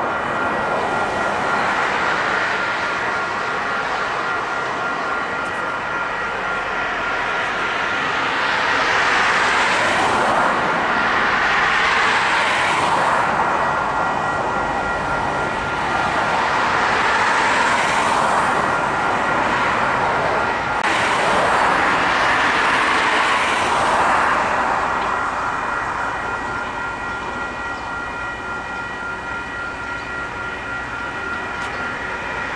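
Passing vehicles: noise that swells and fades every few seconds, over a few steady high-pitched tones.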